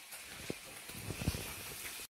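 Bacon frying faintly in a non-stick frying pan: a low sizzle with a few soft pops and taps.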